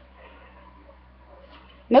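Quiet room tone with a faint steady low hum. A woman's voice starts right at the end.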